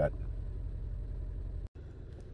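2009 Chevrolet Malibu Hybrid's four-cylinder engine idling steadily, heard from inside the cabin, as it keeps running at a stop in drive with the brake held instead of shutting off for auto-stop, with the check engine light on. The sound drops out briefly near the end.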